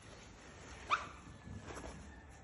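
Young wild boar giving one short, high squeak that rises in pitch about a second in, while being stroked.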